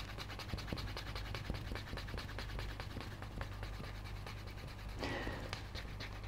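Wooden edge burnisher rubbed quickly back and forth along the water-dampened, bevelled edge of a vegetable-tanned leather wallet, a faint, even run of rapid friction strokes as the edge is burnished smooth.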